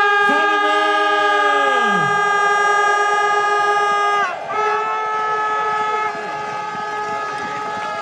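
Spectators' air horns blaring together in long held tones, with lower horn notes sliding down in pitch in the first two seconds; the horns break off briefly about four seconds in and start again.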